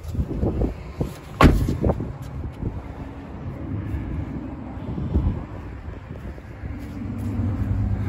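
A car door shutting with a thump about one and a half seconds in, then the 2006 Subaru Impreza WRX's turbocharged flat-four engine idling steadily, its exhaust growing louder near the end close to the tailpipe.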